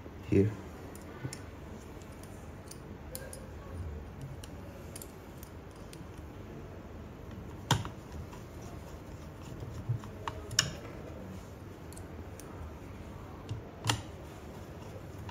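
Light metallic clicks and taps of a precision screwdriver and small screws working on a 3D printer's metal heat bed plate. The clicks are scattered and irregular, with sharper ones about eight seconds in, around ten seconds and near the end.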